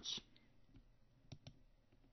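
A computer click, two sharp ticks in quick succession a little past the middle, advancing the slide to its next bullet; otherwise near silence.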